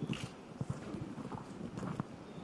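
A string of soft, irregular knocks and taps, with a few brief hisses over them.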